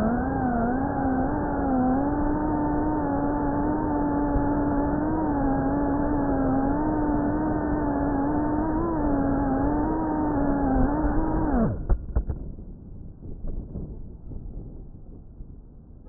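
GEPRC Cinelog FPV drone's brushless motors and propellers whining steadily at a high pitch, wavering slightly with throttle, heard from the onboard camera. About twelve seconds in the whine drops and cuts off sharply as the motors stop, followed by a few knocks as the quad lands.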